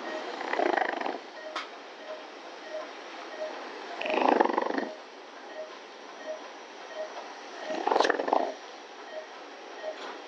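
Operating-room patient monitor beeping a steady short tone about every 0.6 seconds. Three louder, rough, breathy sounds come about three and a half seconds apart, near the start, in the middle and near the end.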